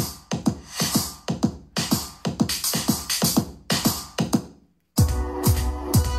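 Electronic dance music with a drum-machine beat and deep falling kick drums, played at once through two Sony mini hi-fi systems, a GPX77 and a GPX8. The two have drifted slightly out of step, one having started the song a little earlier than the other. The music cuts out briefly near the end and comes back with heavier, steadier bass.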